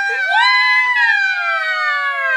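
Two girls screaming a long, high, wailing note together in two voices, held without a break, the pitch sliding slowly down.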